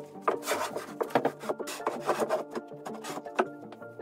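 A wooden flooring sheet scraping and rubbing against the timber riser frame as it is lowered and slid into place, a run of rough scrapes with a sharper knock near the end, over background music.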